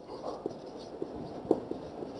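Marker pen writing on a whiteboard: a few faint, short scratching strokes, with one sharper stroke about one and a half seconds in.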